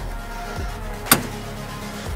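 Background music, with one sharp click about a second in as the Thule T2 Pro XTR hitch bike rack is tilted down.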